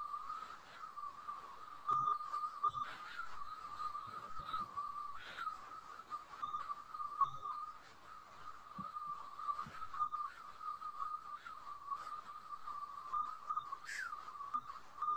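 A steady high-pitched whine, wavering slightly in pitch, runs throughout, with a few faint clicks.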